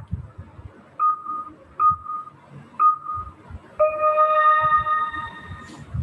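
Online quiz game's countdown sound: three short beeps about a second apart, then a longer tone of several pitches sounding together, lasting about two seconds.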